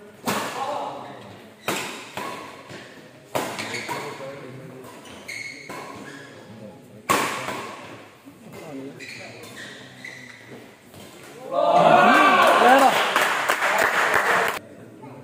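Badminton rackets smacking a shuttlecock in a doubles rally, four sharp hits a second or several apart, with scattered shouts in a large echoing hall. About three seconds before the end a loud burst of shouting and cheering breaks out as the rally ends.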